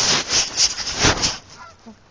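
Loud rustling and rubbing noise against the phone's microphone, swelling unevenly, dying away about a second and a half in, with a faint voice just after.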